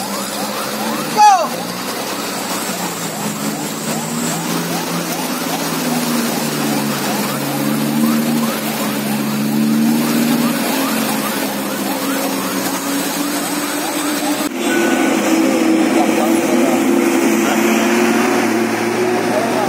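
Diesel truck engines labouring up a steep wet hairpin bend, with a brief loud sweeping sound about a second in. Voices of onlookers are heard over the engines. Late on, the sound changes abruptly to a closer, louder and steadier diesel engine drone from a tanker truck turning on the bend.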